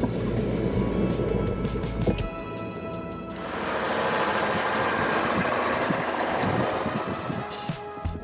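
Background music over the low rumble of a pickup truck towing a fifth-wheel trailer, changing about three and a half seconds in to a steady hiss of wind and road noise as the truck drives on.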